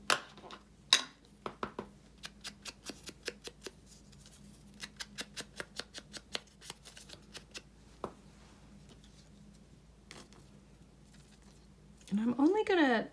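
Ink pad dabbed again and again against the edges of a small paper ticket to darken them: two sharper clicks near the start, then two runs of quick light taps, about five a second.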